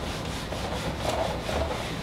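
A whiteboard being wiped clean with quick back-and-forth rubbing strokes, erasing a marker drawing.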